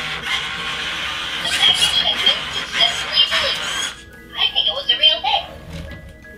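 Electronic music and sound effects, with a short dip about four seconds in.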